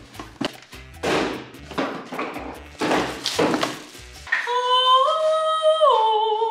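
Cardboard box and packaging being handled in a run of rustles and knocks as a toaster is lifted out. A woman then sings one long held note, stepping up in pitch partway through and dropping at the end.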